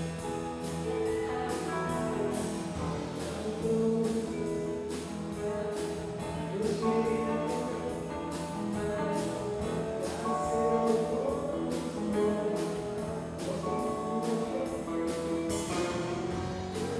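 Live band playing: keyboard, electric guitar and drum kit, with cymbals keeping a steady beat of about two or three strokes a second over sustained chords.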